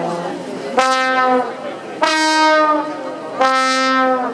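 Solo slide trombone playing three long held notes, each ending in a downward slide of pitch.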